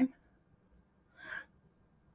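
A short, soft intake of breath a little over a second in, between phrases of a woman's speech.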